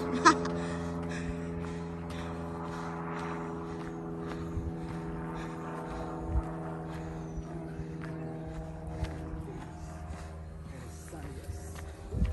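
A steady engine drone at one fixed pitch that fades away near the end, with faint footsteps on a dirt trail.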